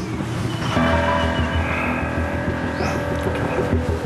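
Dramatic background music: held chords over a low pulsing bass, the chords coming in about a second in.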